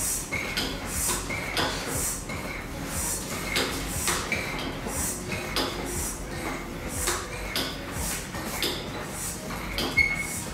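Hand air pump with a hose being worked in quick repeated strokes, pressurising a plastic bottle through its mouth: a clack and a short high whistle of air with each stroke, about two strokes a second.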